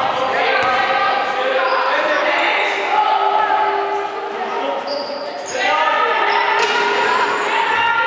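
Basketball game on a wooden sports-hall floor: a ball dribbled and bouncing, sneakers squeaking on the parquet in short steady squeals, and players' calls, all echoing in the large hall.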